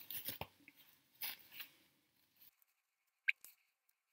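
Faint rustling and crinkling of a disposable hairnet being pulled on over the head, in a few short bursts, with one brief high squeak a little over three seconds in.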